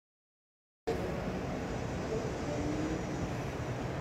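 The sound cuts out completely for nearly the first second, then a steady low rumbling background noise comes in and holds even.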